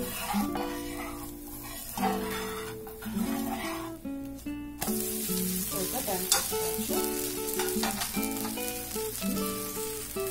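Tomato dosa sizzling on a hot tawa as it roasts, a steady frying hiss that drops off briefly about four seconds in and picks up again a second later, around when the dosa is turned over. Background music of plucked notes plays throughout.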